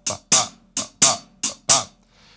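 A man sings a halftime shuffle as 'ba' syllables while a drumstick ticks the closed hi-hat on each note. There are six notes in three long-short pairs, on the first and third triplet partials of each beat.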